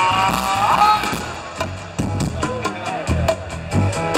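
Live rock band playing through a festival PA, recorded from the crowd: a steady drum, bongo and bass groove, with a brief vocal phrase in the first second.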